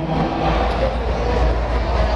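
A steady, loud low rumble with a noisy wash over it: an electronic drone played through the venue's PA.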